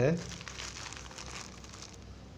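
White plastic courier mailer crinkling faintly as it is handled, mostly in the first second.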